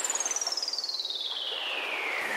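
A falling electronic pitch sweep, one thin whistle-like tone gliding steadily down from very high to mid pitch over a wash of noise, with a quick flutter in its level. It is the intro effect of a lofi track, leading into the beat.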